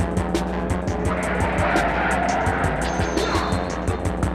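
Live electronic music played on synthesizers and effects: a fast, even run of about five hi-hat-like ticks a second over a steady low drone. A noisy swell rises and fades in the middle.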